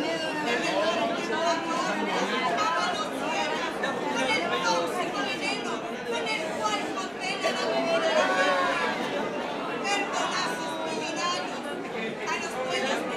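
A woman speaking loudly into a microphone, her voice amplified through the PA in a large hall, without music.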